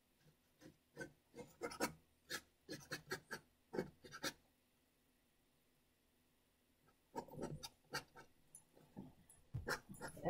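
Palette knife scratching oil paint across a painting panel in a quick run of short strokes, a pause of about two and a half seconds, then a second run of strokes.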